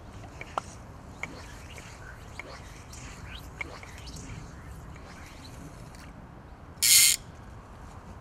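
Fly rod casting: faint scattered ticks while the line is false cast, then one short, loud swish about seven seconds in as the line is shot out on the final cast. Faint bird chirps in the background.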